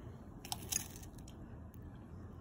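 A fork cutting into a breaded fish fillet on a plate, giving a couple of faint short clicks and crunches about half a second in.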